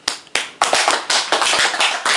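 A small group clapping hands in applause. It starts suddenly with a few claps, thickens into steady clapping after about half a second, and stops abruptly.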